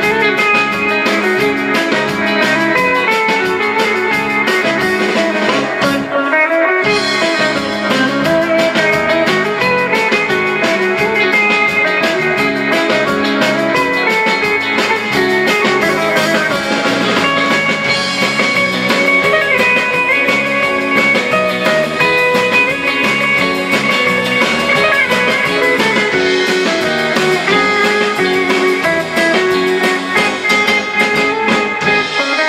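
Live instrumental rautalanka: electric guitars playing the melody over bass and drums in a steady dance beat, with a short break in the bass about six seconds in.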